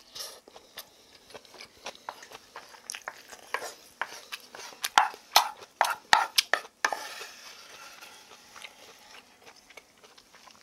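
Close-miked eating of vegetable bibimbap: a mouthful chewed with many sharp clicks, and a wooden spoon knocking and scraping rice from a wooden bowl. The loudest clicks come about five to seven seconds in, followed by a softer steady scraping.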